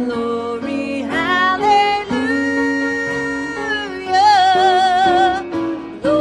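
A woman singing a church song into a microphone, holding long notes with vibrato, over musical accompaniment.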